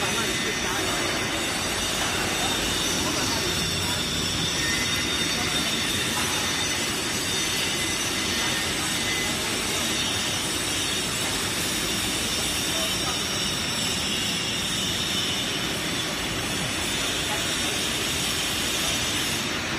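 HY-1300ZST paper slitter running steadily, slitting kraft paper and rewinding it into narrow rolls: a continuous, even mechanical noise from the rollers and moving paper web.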